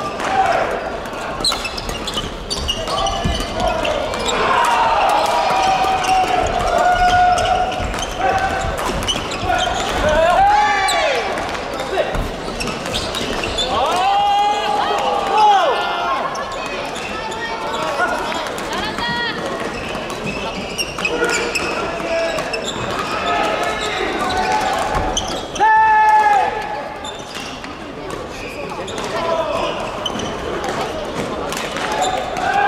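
Badminton in a large echoing sports hall: shuttlecocks being hit with rackets, and sneakers squeaking sharply on the wooden court floor several times, with a murmur of voices from the hall.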